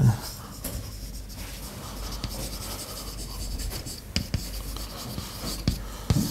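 Chalk writing on a chalkboard: a soft scratching, with a few sharp taps of the chalk against the board in the second half.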